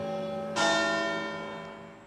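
A tower bell struck once about half a second in, ringing out and slowly fading over the hum left by an earlier strike.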